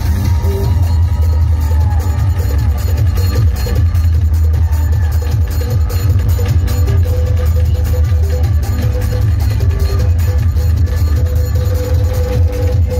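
Loud electronic dance music with a heavy, booming bass and a fast, steady beat, played over a large DJ sound system.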